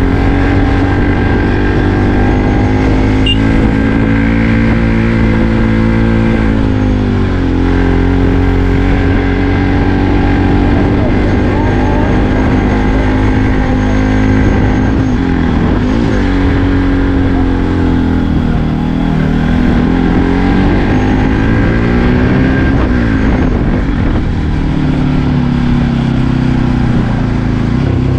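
Bajaj Pulsar NS200's single-cylinder engine pulling hard uphill, heard from the rider's seat. The revs rise and fall with throttle and gear changes, with a clear drop about seven seconds in and further dips and climbs later on.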